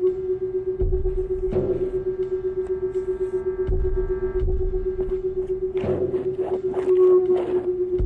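Drone music: a steady held tone sounds throughout, with low thuds every second or two. A cluster of short, noisy crackling bursts comes about six to seven and a half seconds in.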